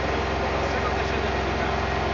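Heavy engine of construction machinery running steadily at a constant pitch, with faint voices murmuring in the crowd.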